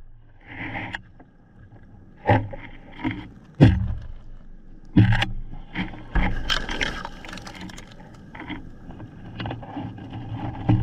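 A few sharp knocks, three of them loud in the first half, then a stretch of scraping and rattling, over a faint steady low hum.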